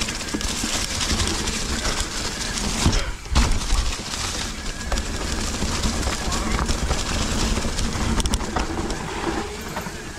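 Mountain bike rolling over a dirt forest trail: tyre and frame rattle with wind on the microphone, and a few sharp knocks about three seconds in.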